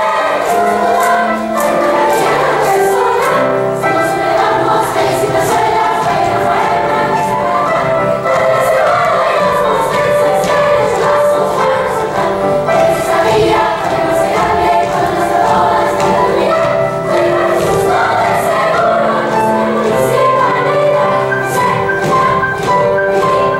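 Girls' choir singing a polka in many voices, with a regular rhythmic pulse.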